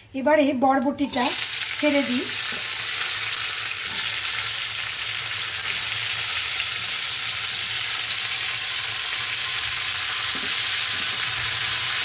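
Chopped long beans (yardlong beans) hitting hot oil in a frying pan, setting off a loud, steady sizzle that starts suddenly about a second in.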